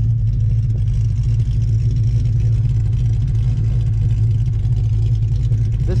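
A steady, low engine hum, even in level throughout, like an engine idling.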